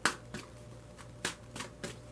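A deck of large tarot cards being shuffled by hand: short, sharp slaps and riffles of the card edges, about five in two seconds, the loudest right at the start.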